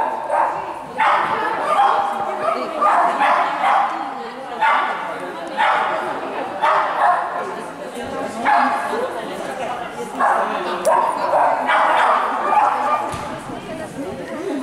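A dog barking repeatedly, short bursts about once a second, while running an agility course.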